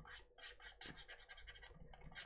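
Faint scratching of a pen stylus on a graphics tablet: a quick run of short strokes, about three or four a second, as brush strokes are laid down in a digital painting.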